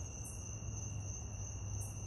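Night-time insect chorus, likely crickets: a steady, high, unbroken trill, with two brief higher hissing buzzes, one early and one near the end, over a low steady rumble.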